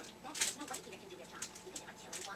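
Faint, indistinct talking, with a brief hissing sound about half a second in.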